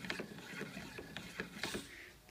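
Hand-worked wooden crank-and-lever linkage with bolted pivots clicking and knocking as the fin arm is swung back and forth: an irregular run of light clicks.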